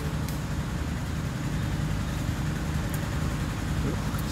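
A steady, low mechanical hum, like an engine running at idle, with a couple of faint clicks.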